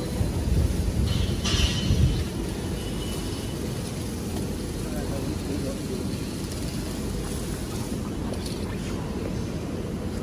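Steady low rumble of tissue paper converting machinery running, louder and more uneven for the first two seconds, then level.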